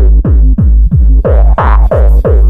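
Gabber hardcore track: a heavily distorted kick drum pounding about three times a second, each hit sweeping down in pitch, with the higher layers dropping back for about a second before coming in again.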